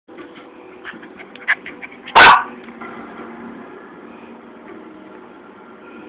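A Maltese gives a single sharp, very loud bark about two seconds in, after a few faint clicks.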